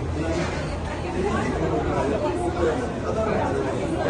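Indistinct conversation: several people talking at the counter, over a steady low hum.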